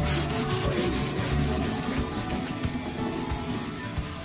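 Continuous rubbing, scraping noise against a surface, over background music with steady low notes.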